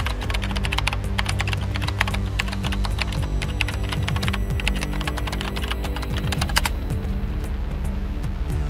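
Typing sound effect: a fast run of keystroke clicks that stops about six and a half seconds in, over low, steady background music.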